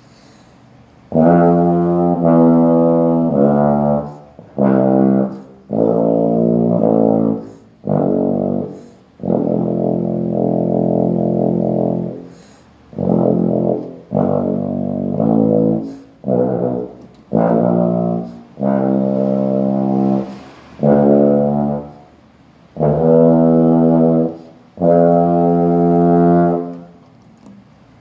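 Large-bore compensating euphonium playing a slow scale of separate held notes, each one to two seconds long with short breaths between, low in the instrument's sub-bass (pedal) octave.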